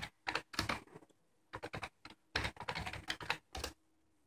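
Computer keyboard being typed on: about a dozen short, sharp keystrokes in uneven clusters, with brief pauses between them.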